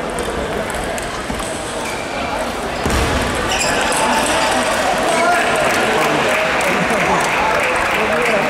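Table tennis rally: the ball clicking off bats and table, with one louder hit about three seconds in. Voices chatter throughout.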